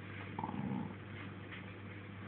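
Staffordshire bull terrier with a tennis ball in its mouth giving a short growl, about half a second long, a little under half a second in.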